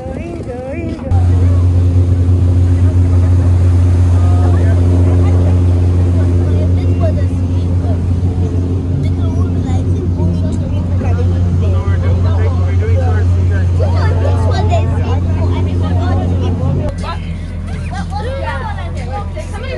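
A small passenger boat's engine running at a steady low drone. It comes in about a second in and drops in level near the end, with people's voices over it.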